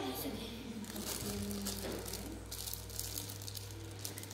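Faint rustling and crinkling with a steady low hum and faint voices underneath.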